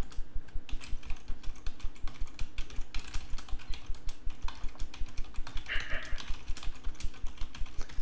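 Typing on a computer keyboard: a fast, steady run of key clicks.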